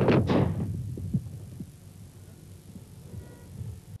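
A staged car-fire explosion goes off with a loud, sudden boom right at the start. A low rumble follows and dies away over the next few seconds.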